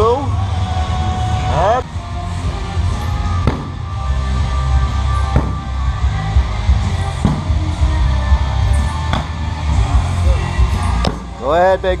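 Background music with a heavy bass beat, over which a sledgehammer strikes a large tractor tire about every two seconds, each hit a sharp knock.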